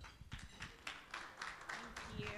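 Light, scattered applause from a small audience: faint, irregular claps.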